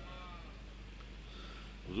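A short pause in a chanted recitation: a voice trails off in the first half second, leaving a steady low background hiss with mains hum on an old tape recording, until a man starts speaking near the end.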